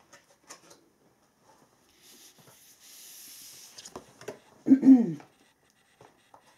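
Tarot cards and quartz crystals being picked up off a cloth-covered table: light clicks, a soft rustling slide of about a second and a half, then more clicks. Near the end a short wordless vocal sound, a hum or murmur, is the loudest thing.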